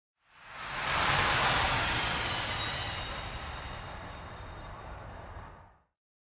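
Jet flyby sound effect: a rushing roar swells within the first second, then slowly fades, with a high whine falling slightly in pitch through it. It cuts off suddenly just before the end.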